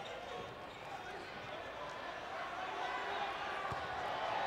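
Court sound of a basketball game: a ball bouncing on the hardwood floor over a steady arena crowd murmur that grows a little louder near the end.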